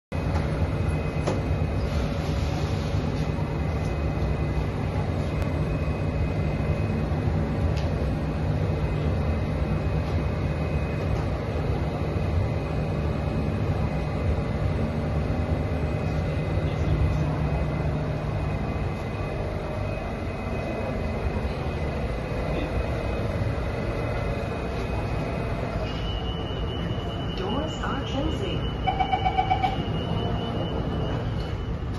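Steady hum inside an SMRT CT251 metro train car standing at a station with its doors open. Near the end, a quick run of door-closing beeps sounds as the doors are about to shut.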